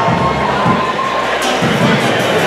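Crowd cheering and shouting, a dense steady din of many voices with a few held shouts in the first second.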